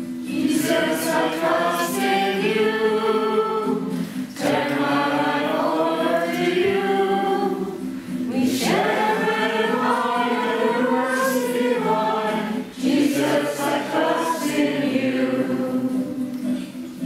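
A small congregation singing a hymn together, in phrases of about four seconds with short breaks between them.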